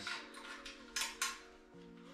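Metal quick-release clip on a Bison Terra Mk2 fishing barrow's steel frame clicking and clinking as it is fastened back in place, with sharp clicks at the start and about a second in, over soft background music.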